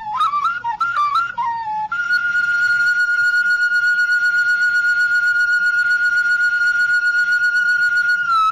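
Music: a flute-like wind melody. It plays quick, ornamented notes for about two seconds, then holds one long, steady high note through the rest.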